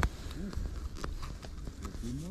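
Scattered small clicks and rustles of hands handling a caught perch and unhooking a small jig from its mouth, with a brief low hum from a person's voice about half a second in and again near the end.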